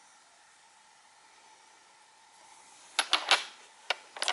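Polished crazy lace agate towers clacking against each other and the other stones in a box as they are handled. There are three sharp clacks in quick succession about three seconds in, then one more near the end.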